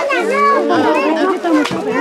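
Several young children talking and calling out over one another.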